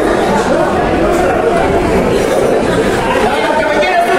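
Crowd of spectators talking and calling out at once, many overlapping voices with no single one standing out.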